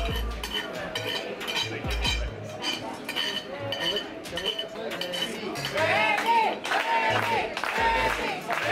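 A spoon clinking and scraping on a plate as the last bits of food are gathered up, over background music with a steady beat. A singing voice in the music comes in about six seconds in.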